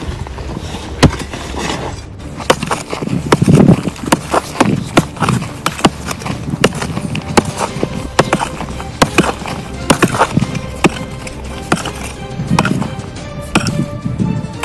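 Pickaxe and shovel digging into dry, rocky ground: irregular sharp strikes of the steel on stone, one or two a second, with loose stones and gravel rattling. Music plays underneath.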